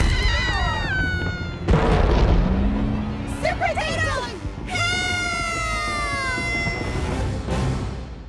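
Cartoon characters screaming in long falling wails over action music, with a heavy crash about two seconds in.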